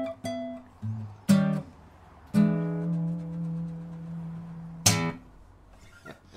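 Unplugged acoustic guitar played fingerstyle in a blues lick: a few short picked notes, then a chord struck about two and a half seconds in and left ringing, ended by a sharp final stroke just before five seconds.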